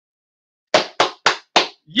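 Four quick hand claps, about three to four a second.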